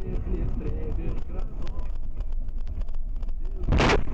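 A single loud bang near the end as an object strikes the car's windshield and cracks the glass. Underneath, steady road and engine noise inside the moving car.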